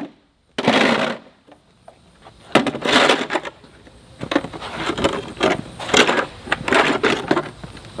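Plastic snow shovel scraping across a concrete driveway, scooping up caked grass clippings and dirt scraped from under a mower deck. There is one scrape about half a second in, then a quick run of repeated scrapes and knocks from about two and a half seconds on.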